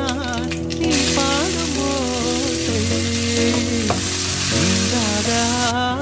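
Hot oil sizzling in a wok as onions, dried chilies and seeds fry. The sizzle starts about a second in and cuts off sharply near the end, over music with a singing voice.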